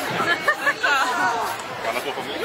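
Speech only: several voices talking over one another in chatter.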